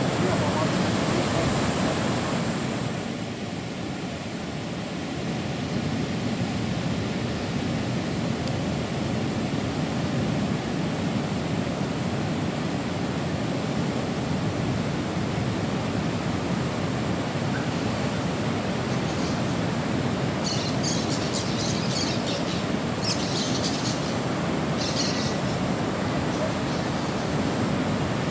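Pacific Ocean surf breaking on a beach: a steady rushing wash of waves, briefly softer about three seconds in, with distant voices.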